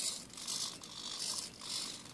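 A small servo-driven biped robot walking across sheets of paper: its plastic feet shuffle and scrape in a quiet, even rhythm of about two steps a second, with the light whir of its hobby servos.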